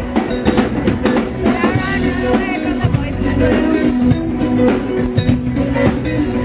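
Live rock band playing loudly: electric guitar and drum kit driving a steady beat, heard from close to the stage.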